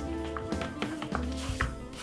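Background music with a steady beat, with a few light taps as chopped seasonings are tipped from a plastic cutting board into a plastic mixing bowl.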